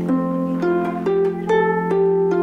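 Concert pedal harp playing a slow line of single plucked notes, about two a second and moving in pitch, over a low bass note that keeps ringing underneath.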